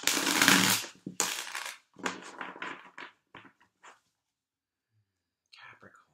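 A deck of tarot cards being riffle-shuffled by hand: two loud bursts of flicking cards in the first two seconds, then a run of shorter, softer shuffles that fade out about four seconds in.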